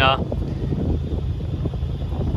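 A steady low rumble with no clear changes.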